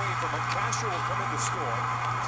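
Baseball TV broadcast audio: a steady stadium crowd-noise bed with faint, indistinct voices and a low steady hum, with no clear commentary.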